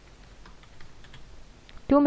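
Typing on a computer keyboard: a few faint, scattered keystrokes.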